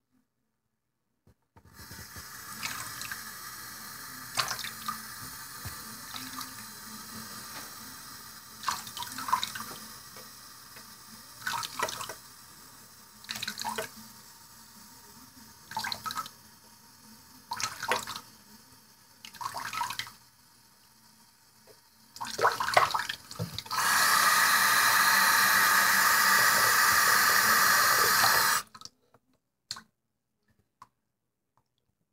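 Bathroom sink tap running in a thin stream into the basin, with short splashes every couple of seconds. Near the end the tap runs at full flow, much louder, for about four seconds, then stops suddenly.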